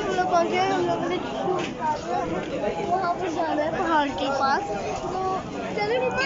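Chatter of a crowd: many voices talking over one another, none standing out clearly.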